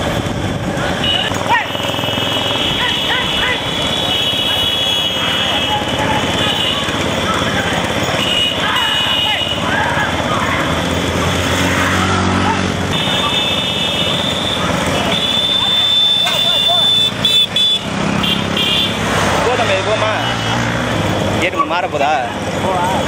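Motorcycle engines running close behind racing bullock carts, with men shouting throughout and horns sounding at times in the second half.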